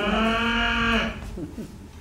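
A person imitating a cow mooing: one steady, drawn-out call lasting about a second.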